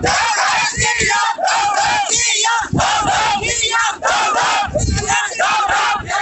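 A crowd of protesters shouting slogans together, loud and continuous, in repeated rising and falling calls with short breaks between them.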